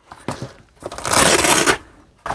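Velcro (hook-and-loop) ripping apart as a pocket panel is pulled off the inside wall of a Veto Tech Pac Wheeler tool bag: a few faint rustles, then one tearing noise about a second long in the second half.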